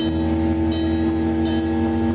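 A live instrumental rock band breaks down to one sustained electric-guitar chord held steady, while the bass and kick drum drop out and leave the low end empty.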